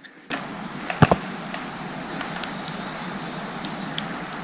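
Woodpecker tapping on a tree: two sharp knocks about a second in, then a few fainter taps, over a steady rushing noise.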